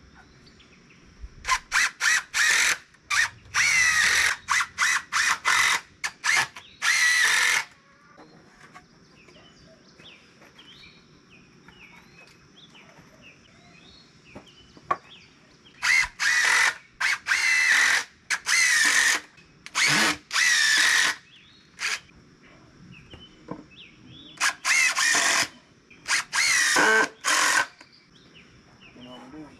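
Cordless drill driving screws into a wooden frame in short bursts, each a fraction of a second to about a second long. The bursts come in three runs: the first few seconds, again from about the middle, and near the end.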